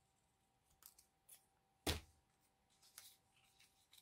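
Scissors snipping paper in a few short, quiet cuts, with one sharper, louder snip or click about two seconds in, then soft handling of paper pieces.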